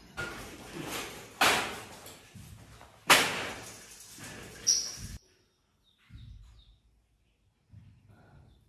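Knocks and clatter from a man climbing onto a metal scaffold, with two loud sharp knocks a second and a half apart that ring out briefly. The sound cuts off abruptly about five seconds in, leaving only faint bumps.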